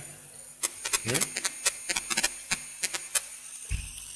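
A pause in a man's talk into a microphone: a brief "hmm" about a second in, and a scatter of small clicks, over a steady high-pitched whine.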